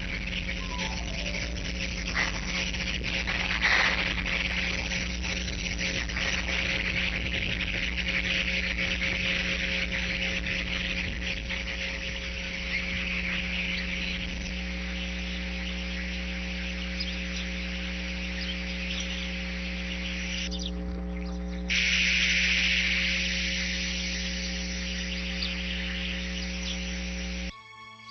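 Steady electrical hum from a nest camera's microphone, with a constant high hiss over it. The hiss drops out for about a second around twenty seconds in, then comes back louder.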